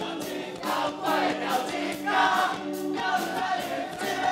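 Rock band playing live through a PA: electric guitars and bass over a steady drumbeat with cymbals, and sung vocals on top, heard from the audience.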